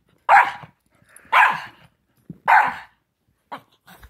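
A small dog barking three times, about a second apart, loud.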